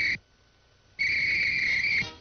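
Traffic cop's whistle blowing long, steady high blasts: one ends just after the start, and after a pause of under a second a second blast begins about a second in and holds. The whistle signals traffic to stop and go.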